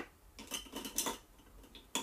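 Handling noise: a sharp click, then a quick cluster of light clicks and clatter about half a second to a second in, and another click at the end.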